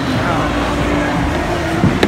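A steady low mechanical hum under faint crowd chatter.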